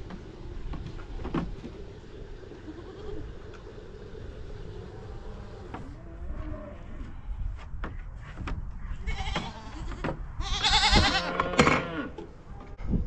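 Goats bleating: a few faint calls, then one loud, wavering bleat near the end, over a steady low rumble.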